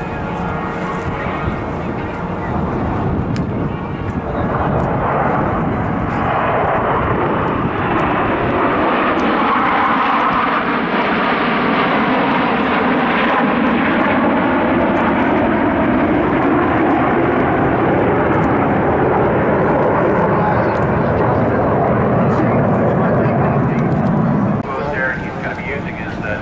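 A formation of CF-18 Hornet fighter jets flying over, the jet engine noise swelling from a few seconds in. It runs loud, with a pitch in the noise that dips and rises as they pass, and cuts off suddenly near the end.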